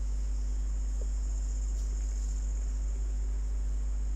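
Steady low hum with a faint, even high-pitched hiss, unchanging throughout and with no other events: background noise of the recording between the instructor's remarks.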